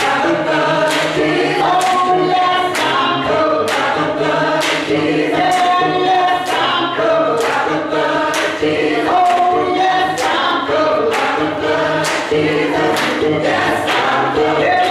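Youth choir singing a gospel song in full harmony, with a steady beat about once a second under the voices.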